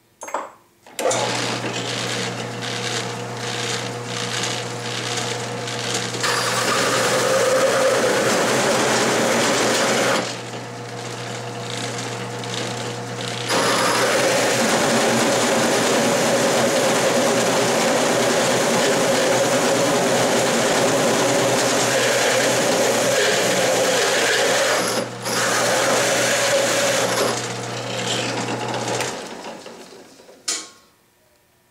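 Drill press driving a large hole saw through 10-gauge steel plate, cutting all the way through into a groove already half cut: a steady motor hum under a harsh metal-cutting noise. The cutting eases off for a few seconds midway and then resumes, and the motor stops near the end.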